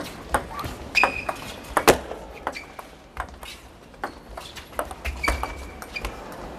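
Table tennis rally: a plastic ball struck back and forth by rubber-covered bats and bouncing on the table, giving a quick irregular series of sharp clicks, the loudest about two seconds in. Two brief high squeaks of shoes on the court floor come about one second and five seconds in.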